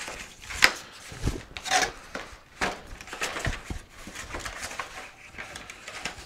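Cardboard packaging being pulled open and handled: irregular rustling and scraping of cardboard flaps, with a few sharper scuffs and soft knocks.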